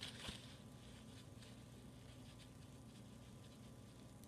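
Near silence: faint rustle of fabric being handled by hand, with a few soft ticks.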